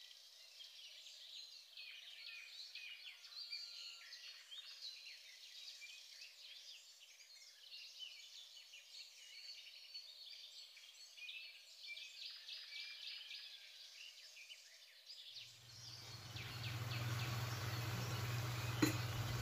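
Faint birds chirping and twittering, many short calls over a quiet outdoor background. About fifteen seconds in, a steady low hum with a hiss comes in and grows louder.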